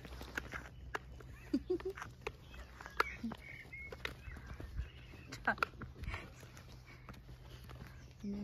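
Footsteps and scattered light clicks and taps on tarmac as a man and a beagle on a retractable lead walk across a car park, over a steady low rumble. A few brief chirps and squeaks come in between, around the second and third seconds and again past the middle.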